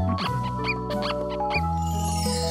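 Cartoon polishing squeaks: several short, high squeaks of a cloth rubbed on a pumpkin's skin, over light background music.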